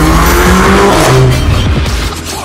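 Mercedes-AMG A45's turbocharged four-cylinder, fitted with a JP Performance exhaust, revving with a slowly rising pitch while its tyres squeal, with background music under it.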